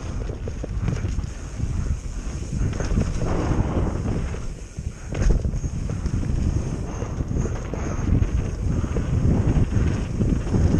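Wind buffeting the microphone over a mountain bike's tyres rolling fast on a dirt trail, with constant rattling from the bike. There is a brief quieter moment just before five seconds in, then a sharp knock.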